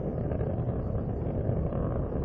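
Steady low rumble of the Space Shuttle's rocket motors during ascent, the solid rocket boosters and main engines burning.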